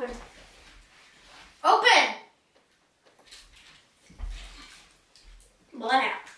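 Brief bursts of a girl's voice, a loud one about two seconds in and another at the very end, with faint rustling and low bumps of handling noise in between.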